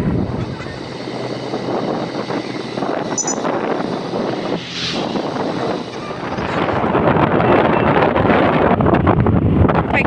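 Wind rushing over the microphone of a moving motorbike, with road noise from the ride. It dips briefly about five seconds in, then grows louder from about six seconds in.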